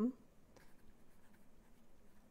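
Pen writing on paper, a faint scratching as the words are handwritten.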